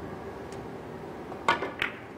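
Three-cushion billiard shot: a faint cue-tip tap about half a second in, then two sharp, briefly ringing clicks of the balls striking about a second and a half in, the first the louder.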